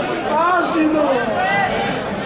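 Several men's voices talking and calling out over one another, a loose chatter of people close to the microphone.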